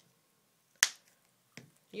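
A single sharp click about a second in, short and bright with almost no ring after it.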